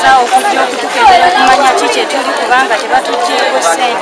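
A woman speaking, with a crowd chattering behind her.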